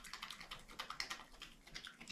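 European badger crunching dry food off a hard floor: a quick, irregular run of faint crisp clicks.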